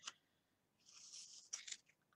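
Scissors cutting through carded wool wound around a cardboard strip, slicing the loops open: a faint, soft snipping noise about a second in, ending with a short click.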